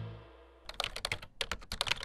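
Music fading out, then a fast, irregular run of keyboard typing clicks starting about two-thirds of a second in.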